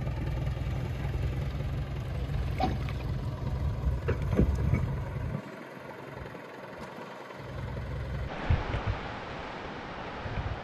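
Boat engine running with a steady low drone as the boat motors over calm water, with a few light knocks; about five seconds in the sound cuts away, and near the end wind noise on the microphone takes over.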